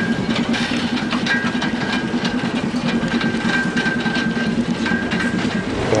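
Old city bus heard as if riding inside: a steady engine drone with a busy rattle of clicks and clinks throughout. It cuts off shortly before the end.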